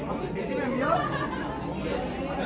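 People talking and chattering.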